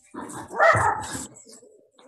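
A dog barking through a participant's open microphone on a video call, in a short burst in the first second or so.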